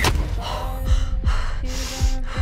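A woman gasping and breathing hard over dark trailer music. The music holds low notes and has a sharp hit at the very start and two deep hits that drop in pitch about a second in.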